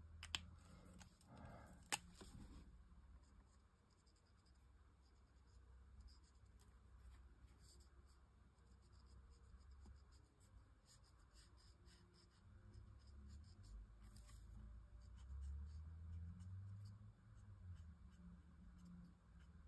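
Faint strokes of a Promarker alcohol marker nib on cardstock as an area of the image is coloured in, with two sharp clicks in the first two seconds.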